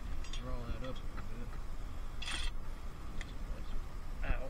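Ratchet wrench working a bolt on a car's power steering pump: a few scattered clicks and a short rasp a little over two seconds in. A brief murmured voice comes about half a second in.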